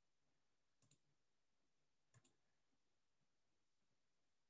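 Near silence, broken by two faint computer mouse clicks a little over a second apart.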